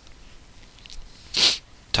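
A single short, sharp breath noise from the person, a quick hiss lasting about a quarter second, about a second and a half in, over faint room tone.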